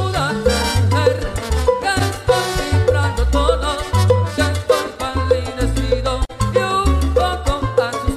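Salsa music recording playing, with a bass line that changes note every fraction of a second under repeated higher notes and sharp percussion hits.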